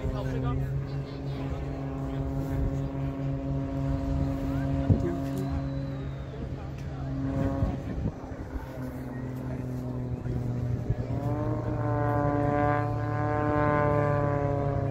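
Propeller aerobatic plane's engine droning overhead in a steady tone, rising in pitch and growing a little louder about eleven seconds in.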